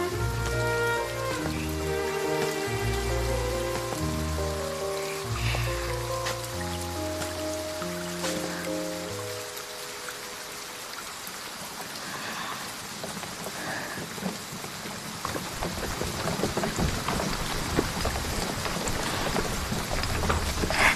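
Steady rain falling, with a patter of drops. For roughly the first half it sits under background music of held notes over a low bass line; the music fades out about nine seconds in, leaving the rain alone.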